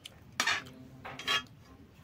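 Two short scraping clatters on a stainless steel bowl, under a second apart, as rice is mixed and scooped from it by hand.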